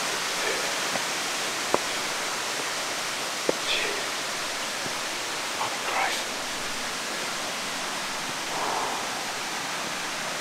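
Steady, even rushing hiss like running water, with two sharp clicks in the first few seconds and a few faint short vocal sounds from the hiker, such as groans or breaths.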